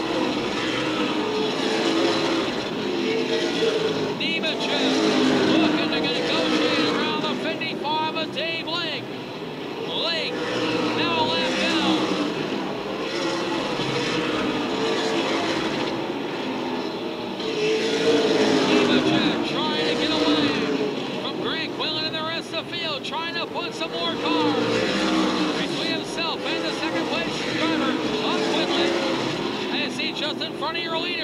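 Super late model stock cars' V8 engines running on a paved oval, swelling and fading as the cars go past.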